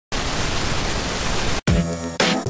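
A burst of television-style static hiss, steady for about a second and a half, that cuts off suddenly. Music with a beat comes in right after.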